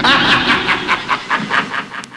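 Rapid rhythmic clatter, about seven pulses a second, fading away towards the end.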